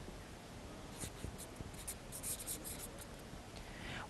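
Faint rustling and scratching, with a run of light ticks in the middle.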